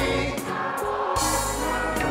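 Church choir singing a gospel worship song with instrumental ensemble accompaniment, held chords and sung lines carrying through.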